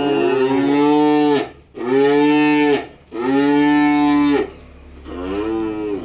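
Young Simmental calf mooing: loud, drawn-out, fairly high-pitched bawls, each about a second long. One call is running at the start, two more follow, and a fainter, shorter call comes near the end.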